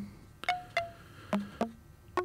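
Eurorack modular synth sequence played through a Rings-style resonator module: sparse, short plucked chime-like notes in F major, four in these two seconds, each struck sharply and ringing briefly, in a random-sounding order.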